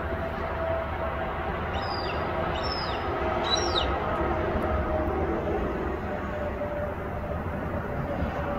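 Three short, high bird calls, each gliding downward, about two, three and three and a half seconds in. Behind them runs a steady low rumble with a faint hum.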